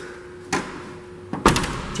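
Upper liftgate of a 2013 Mitsubishi Outlander's clamshell tailgate swung down and shut by hand: a light click about half a second in, then a single loud slam as the hatch latches, about a second and a half in.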